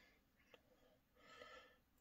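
Near silence, with a faint breath near the end.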